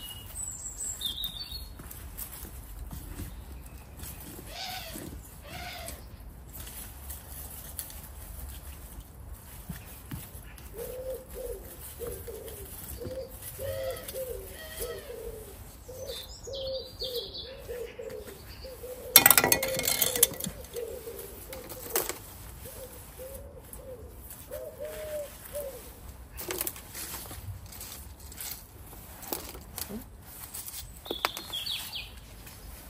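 Rustling and scraping of compost being dug out of a plastic compost bin's bottom hatch by gloved hands, with one loud scrape or knock about two-thirds of the way through. Through the middle stretch a pigeon coos over and over, and a small bird chirps a few times.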